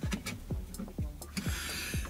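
Scattered light clicks and taps from an OBD2 interface cable being handled and plugged into the diagnostic port under a car's dashboard, with a short rustle about one and a half seconds in.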